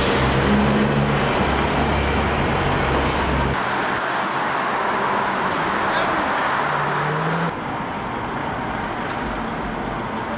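City street traffic: a large vehicle passes close with a low engine rumble for the first few seconds, followed by general traffic noise. The sound drops abruptly to a quieter street hum about seven and a half seconds in.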